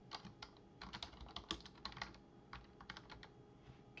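Computer keyboard keys clicking as a short phrase is typed: a quick, uneven run of keystrokes that stops shortly before the end.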